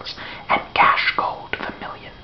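Whispered speech: a man reading poetry aloud in a whisper, in short breathy phrases.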